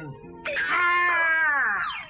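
A cartoon donkey's voiced bray, sung as an attempt at singing: one long, strained cry that starts about half a second in and slides down in pitch, an annoying noise.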